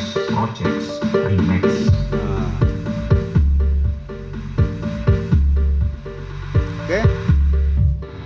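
A song played through a home-built tone control and amplifier into speakers: a repeating short-note melody with vocals audible again, since the vocal cut has just been switched off. A deep subwoofer bass line comes in about two seconds in and pulses in long low notes.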